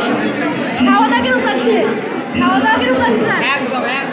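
Speech only: several people talking at once in a crowd.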